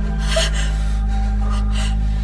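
A person gasps sharply, twice, over a steady low drone in the background score.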